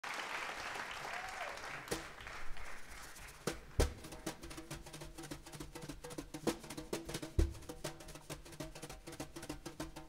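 Audience applause dying away over the first two seconds, then a drummer playing a sparse, quiet pattern on a drum kit: light irregular taps and clicks on cymbals and drums, with a heavier bass-drum thump twice, over a faint low held note.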